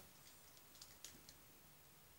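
Near silence: room tone, with a few faint soft ticks about a second in from a paper sheet being handled.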